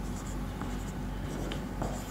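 Marker pen writing digits on a whiteboard: a run of short strokes and light taps over a low steady hum.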